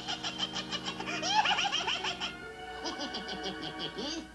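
A cartoon character's high-pitched cackle, a fast run of repeated laugh pulses lasting about two seconds, then a shorter second run near the end, over an orchestral music underscore.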